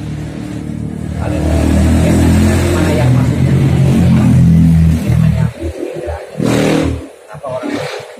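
A motor vehicle's engine passing close by: it builds up over the first couple of seconds, is loud through the middle, and drops away about five and a half seconds in.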